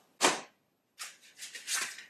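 Hard plastic shell sorter trays being handled: a short knock as one is set down, then a run of light clicks and rustles as another is picked up.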